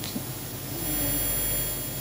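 Steady rumbling background noise with hiss, a little louder for about a second in the middle, with a brief faint hesitation sound from a woman's voice.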